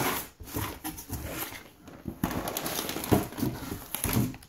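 Packaging rustling and knocking as items are rummaged through in an open cardboard shipping box, with plastic bags crinkling and jars bumping, in irregular bursts.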